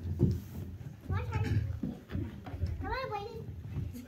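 Young child's voice: two short high-pitched calls that rise and fall in pitch, over low bumps and rumble.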